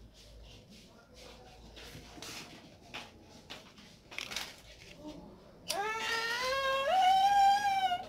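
Faint rustling and a few small clicks, then, about three-quarters of the way through, a long drawn-out vocal cry that climbs in pitch and holds for about two seconds.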